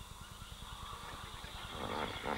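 Faint riverside wildlife ambience: a steady high hum under a low rumble, with bird calls starting near the end.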